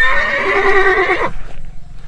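A horse neighing: one call lasting just over a second, falling slightly in pitch, then stopping suddenly.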